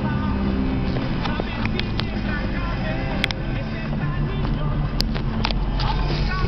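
Nissan Terrano II running steadily on the move, heard from inside the cabin, with a few sharp clicks.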